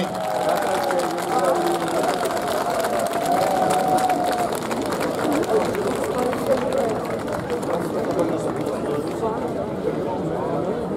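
Voices talking with crowd chatter behind them, with no music playing.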